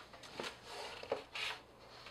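Faint rubbing and scraping of paper against cardboard as a large sheet is slid out of a cardboard mailing box, with a short rustle about one and a half seconds in.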